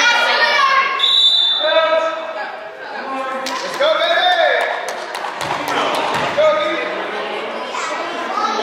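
High-pitched voices call out across a gym, and a basketball bounces twice on the hardwood floor a little past the middle.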